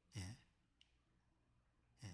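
Near silence in a small room, broken by a man's short, soft exhale just after the start and a faint tick a little later.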